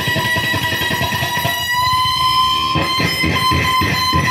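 Electric guitar being played: a high note held for about four seconds over rapid picked notes, which get stronger in the second half.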